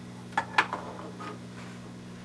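Two short sharp clicks about half a second in, the second louder, from handling the VGA extender transmitter box and its network cable plug as the cable is connected. A steady low hum runs underneath.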